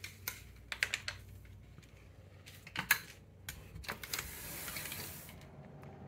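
A door being unlocked and opened: a run of sharp, irregular clicks from the lock and latch, then a soft hiss about four seconds in as the door swings open.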